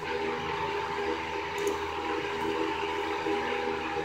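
Steady background hum made of several even, unchanging tones, over a constant hiss.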